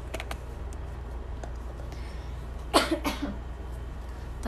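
A woman coughs twice in quick succession about three seconds in, over a steady low hum.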